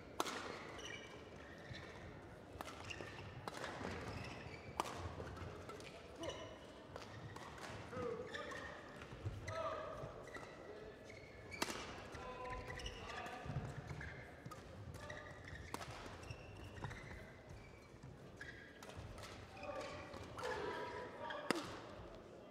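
Badminton rally: rackets striking a shuttlecock again and again, sharp hits scattered through the rally, over faint voices in the hall.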